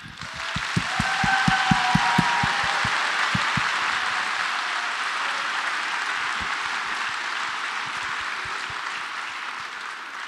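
A large theatre audience applauding: dense, steady clapping that builds within the first second and slowly tapers off toward the end.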